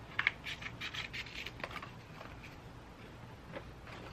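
Scissors cutting through a cardboard toilet-paper tube: a quick run of short cutting sounds in the first two seconds, then fainter handling of the cardboard.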